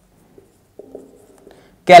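Faint sounds of a marker writing on a whiteboard: a light tap about half a second in, then a short stretch of pen strokes around a second in.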